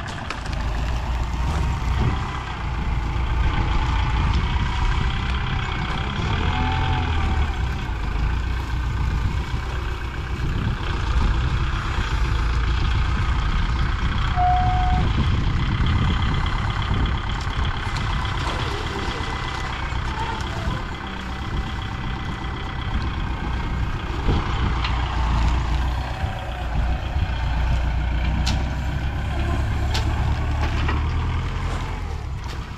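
Diesel engines of a tractor grab loader and an E-taen farm truck running steadily in a low rumble while sugarcane is loaded. A brief high note sounds about halfway through.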